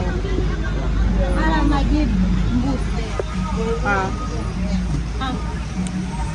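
Busy roadside street: the low, steady rumble of a motor vehicle running close by, with people's voices talking in short bursts over it.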